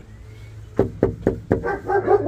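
Knuckles knocking on a house's front door, about four raps a little under a second in, followed near the end by dogs inside starting to bark and yip in response.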